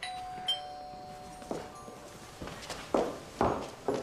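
A doorbell chime rings, its tones fading over about two seconds. It is followed by several soft thumps in the second half.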